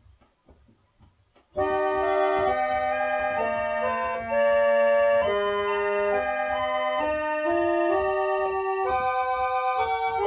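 Antique foot-pumped Dominion reed organ, recently overhauled, playing a hymn tune in steady held chords that step from note to note. It starts about a second and a half in, after a few faint low knocks of the treadles being pumped.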